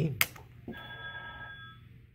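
A sharp click, then a bell-like ringing tone with several steady pitches that lasts about a second and stops shortly before the end.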